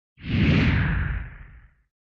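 A whoosh sound effect over a deep rumble, a title-card transition sting. It starts suddenly, slides down in pitch and fades out over about a second and a half.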